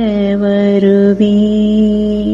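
A solo voice singing a slow devotional chant in long held notes, stepping down to a lower note near the start.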